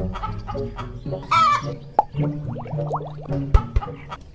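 A chicken clucking and squawking in short rising calls, over background music with held notes; two dull thumps near the end.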